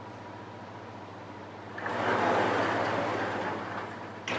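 A large tile display panel in a metal frame sliding along its track: a rolling noise that starts about two seconds in and fades out near the end, over a low steady hum.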